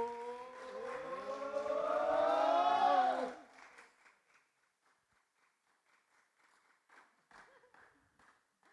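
Several voices together in one long, rising shout that swells for about three seconds and then stops. It is followed by faint, scattered clapping.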